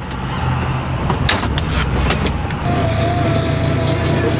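Side-by-side UTV engine running steadily as the vehicle sets off, with a few sharp clacks about a second in. A steady high whine joins near the end.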